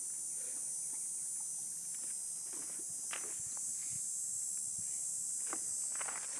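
Steady high-pitched insect chorus, with a few soft scuffs from horses shifting their hooves on the gravel.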